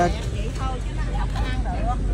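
Brief snatches of voices talking over a steady low rumble.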